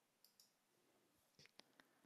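Near silence, broken by a handful of faint, sharp clicks.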